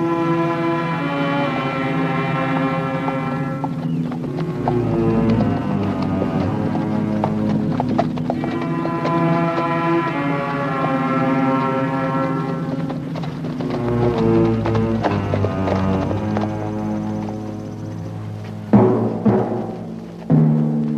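Orchestral score of sustained brass and string chords with timpani, changing chord every few seconds, over the clip-clop of horses' hooves. Near the end come a few sharp, loud drum strokes.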